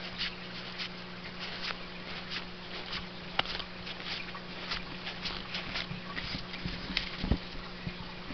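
Paper trading cards being flicked through one by one in the hand: a run of light, irregular ticks and slides of card against card over a steady low hum. A couple of soft, low thumps come near the end as the stack is gathered together.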